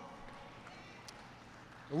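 A pause in a man's speech: faint, even room noise of a large hall that slowly fades, with one faint click about halfway. The man's voice comes back at the very end.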